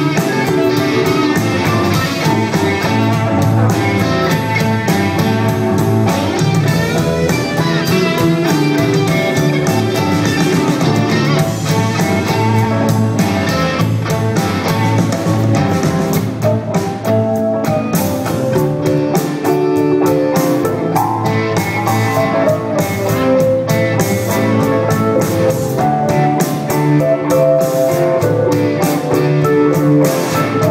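Live band playing an instrumental blues-rock passage with electric guitars, keyboard and a drum kit.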